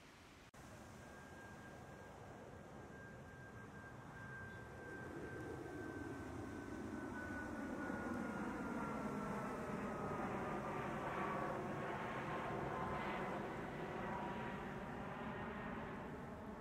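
An aircraft passing over: a rushing engine noise that grows steadily louder, with a thin whine that slowly falls in pitch.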